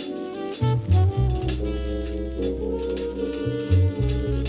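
Jazz-fusion band recording: a prominent electric bass line of low notes over a drum kit's steady beat, with sustained horn and chord tones above.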